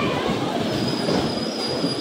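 Electric bumper cars running around the rink: a steady mechanical running noise from the cars, with a thin high whine coming in about a second in.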